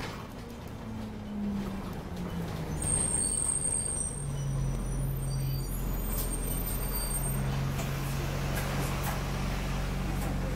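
Alexander Dennis Enviro 200 single-deck bus heard from inside the saloon: the engine's low drone drops in pitch about a second in, then picks up and holds steady from about four seconds in as the bus drives on. A thin high whine sounds briefly around three seconds in.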